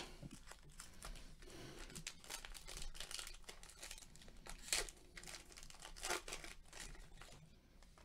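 The foil wrapper of a 2019-20 Panini Mosaic basketball card pack being torn open and crinkled by hand: a run of faint crackles, with two louder crackles just before five seconds and about six seconds in, fading out near the end.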